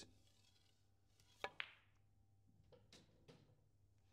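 Snooker cue tip clicking against the cue ball on a softly played stun-run shot, with the cue ball clicking into the black a split second later: two sharp clicks close together. A few faint knocks follow about a second later.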